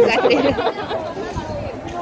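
People talking: several voices chattering over one another.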